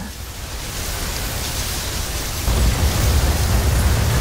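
Sound-effect rumble of a fiery energy surge in an animated fight: a steady rushing hiss, joined about halfway through by a loud, deep rumble.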